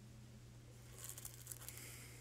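Faint rustling and crinkling of a card deck being handled and shuffled in the hands, mostly in the second half, over a steady low hum.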